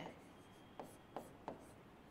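Faint stylus strokes on an interactive display screen as letters and a tick mark are written: three short scratches about a second in, over quiet room tone.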